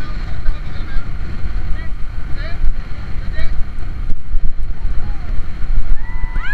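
Wind buffeting the microphone on a speedboat under way, over the boat's running engine and the rush of water.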